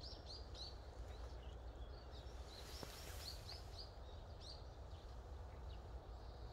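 Faint small-bird chirps: short high notes repeated several times a second in runs, over a steady low outdoor rumble.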